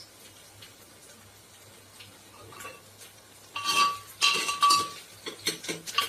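A metal utensil clinking and scraping against an aluminium cooking pot, in a burst of about a second and a half starting a little past halfway, with a ringing metallic tone.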